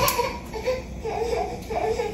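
A faint, high-pitched voice in the background, like a child talking or whining, in short broken phrases.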